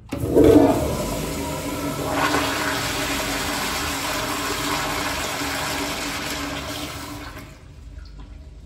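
1960s Eljer toilet on a commercial flushometer valve flushing: a loud sudden rush of water as the handle is pushed, strongest in the first second, running steadily and dying away near the end.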